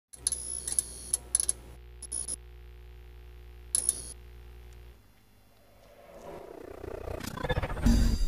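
Intro audio: a steady low hum with short bursts of crackle for about five seconds, then a brief dip and a swell that builds over the last two seconds into a loud music sting for the logo.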